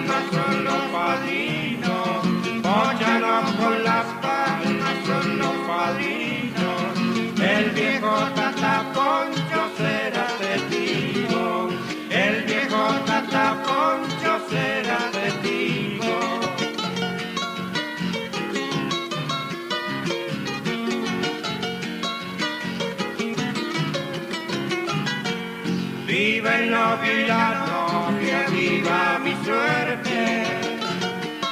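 Two acoustic guitars playing an instrumental passage of Argentine Cuyo folk music.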